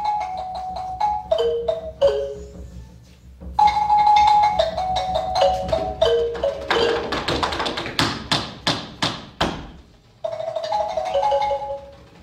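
Small jazz band opening a number: short descending phrases of plucked, mallet-like notes, broken by brief pauses, with a quick run of loud drum strikes in the middle.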